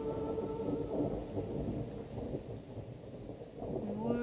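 Rolling thunder, a continuous low rumble with an uneven, crackling texture. The tail of a held musical chord fades under it in the first second or two.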